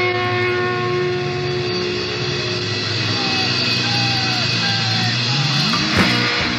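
Live heavy metal band's distorted electric guitars and bass holding long sustained notes, with a few short falling pitch bends partway through and a rising slide near the end that leads into the next riff.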